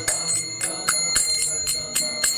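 Small brass hand cymbals (kartals) struck in a steady beat, about four strikes a second, each stroke ringing with a bright, high, metallic tone.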